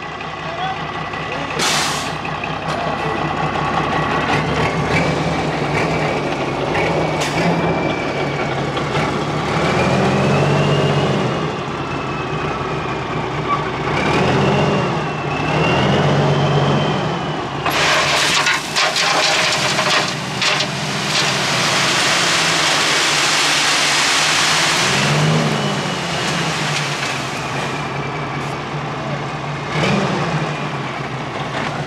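Diesel dump truck's engine running and revving up several times as the truck moves into place and raises its bed, with a rising and falling whine over it. About 18 seconds in, its load of sand slides out of the tipped bed as a loud rushing hiss that lasts about eight seconds.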